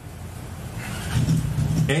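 A motor vehicle engine running nearby, a steady low hum that grows louder during the first second or so.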